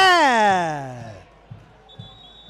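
A man's long, falling cry of disappointment as a shot misses the goal. It is loud at first and slides down in pitch as it trails off over about a second.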